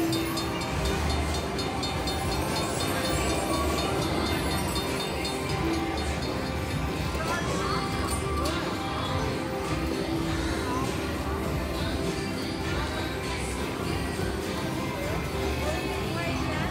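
Aristocrat Luxury Line slot machine playing its Gold Train bonus-feature music and train sound effects, with a fast ticking in the first few seconds, over continuous casino background noise.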